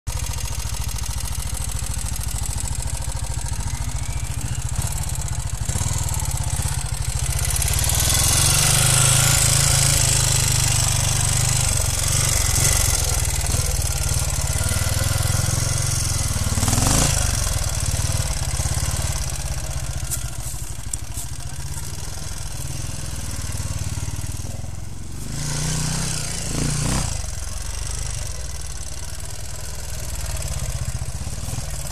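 Engine of a vintage Moto Guzzi trials motorcycle running under a rider's throttle: a steady low rumble that swells for a few seconds, with quick rising revs about halfway through and again near the end.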